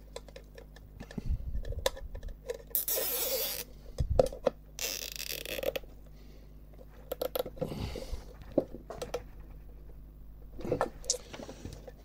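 Nylon zip tie pulled through its ratchet, two separate zipping runs of about a second each, a few seconds apart, among small clicks and rustles of cables being handled.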